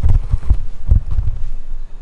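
A person gulping a drink from a cup, heard as a run of low swallows about two a second.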